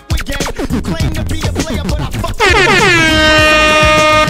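Dancehall mix music with quick drum hits, then about two and a half seconds in a loud DJ air-horn sound effect that drops in pitch and holds a steady tone, rising above the music.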